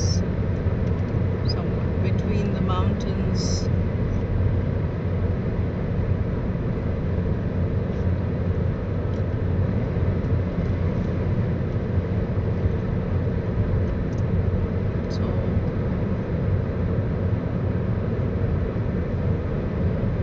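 Steady low road and engine noise inside a car's cabin, cruising on a highway at about 120 km/h.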